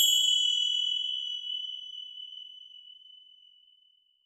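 A bright, bell-like ding sound effect struck once and ringing out, fading away over about three and a half seconds: the closing hit of an animated logo sting.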